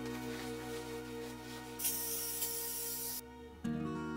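Background music with acoustic guitar. A brief hiss rises over it a little before the middle and stops about three seconds in, and the music breaks off briefly near the end before picking up again.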